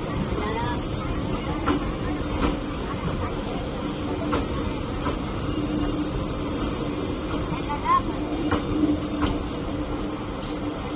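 Express train's LHB passenger coaches rolling past on steel rails, a steady rumble broken by sharp clacks of wheels over rail joints at irregular intervals.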